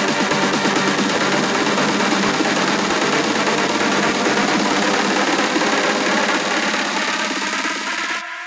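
Techno track in a build-up: the bass is filtered out and a dense stream of very fast repeated hits fills the mix, easing off slightly near the end.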